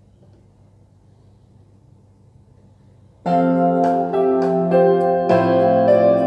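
Yamaha arranger keyboard playing a song with its auto-accompaniment: near-silent for about three seconds, then sustained electric piano and string chords start abruptly, with a beat ticking on top and the chord changing about once a second.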